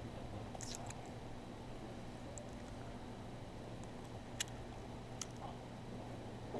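A table knife scraping inside a plastic peanut butter jar as it scoops out peanut butter, with two sharp clicks of the blade against the jar near the end. A steady low electrical hum runs underneath.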